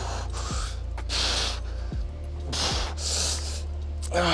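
A man breathing hard in sharp, noisy bursts of effort, the loudest about a second in and again near the end, as he strains through resisted lunge reps in a harness.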